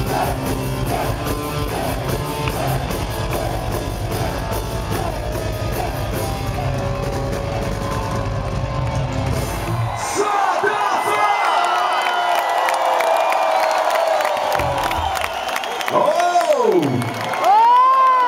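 Hard rock band playing live, with drums and bass, ending about ten seconds in. The crowd then cheers and whoops, and near the end a voice calls out in long rising and falling glides.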